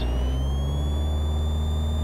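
Piper Cherokee's piston engine and propeller running up to full takeoff power as the throttle goes in. A whine rises in pitch over about the first second, then holds steady over a steady low drone.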